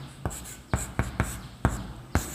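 Chalk scratching and tapping on a chalkboard as lines are drawn and letters written, with several sharp clicks of the chalk striking the board.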